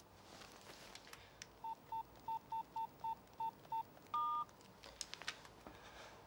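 Phone keypad tones as a number is dialled: eight short beeps at one pitch over about two seconds, then a longer two-tone beep, followed by a few faint clicks.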